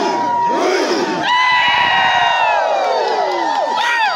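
A crowd of men shouting and whooping together. Many voices hold long, high cries, each falling away at its end, and a fresh wave of cries starts just before the end.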